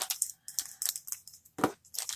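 Small handling noises of a plastic watercolor half pan and paintbrushes being picked up and moved on the desk: a few faint clicks and rustles, with one sharper tap near the end.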